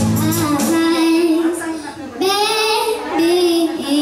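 A young girl singing with long held, gliding notes, accompanied on a Yamaha electronic keyboard. The keyboard's low backing drops out about half a second in and comes back at the end, leaving the voice nearly alone.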